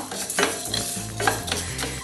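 Whole coriander seeds stirred with a wooden spatula as they dry-roast in a stainless steel pan, in short irregular scraping strokes.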